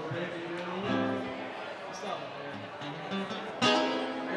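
A man singing live to his own strummed acoustic guitar, with one louder, sharper strummed chord near the end.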